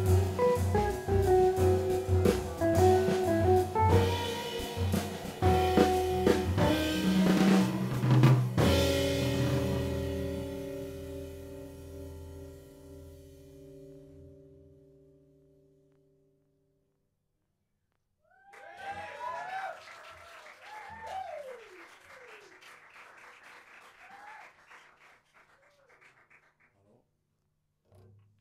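Jazz quartet of piano, electric archtop guitar, double bass and drum kit playing the closing bars of a tune. The final chord is held and rings away to silence. A few seconds later faint audience clapping and whoops follow.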